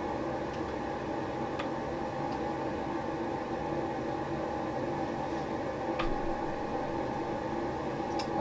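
Steady, even machine-like hum with a few faint held tones, broken by two faint clicks.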